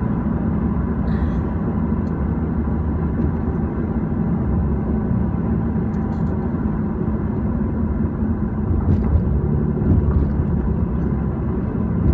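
Steady low rumble of a moving car's engine and tyres on the road, heard from inside the cabin.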